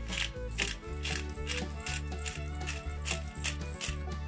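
Pepper grinder being twisted, grinding mixed peppercorns with a repeated ratcheting crunch, over background music.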